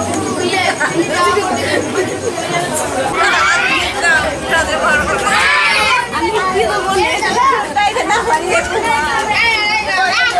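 A group of women chattering all at once, with many high voices overlapping excitedly.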